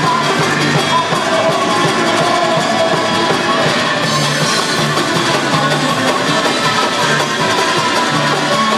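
Live worship music played loud through a PA: a group of men singing over acoustic guitars, bass and drums, with a steady, repeating bass line.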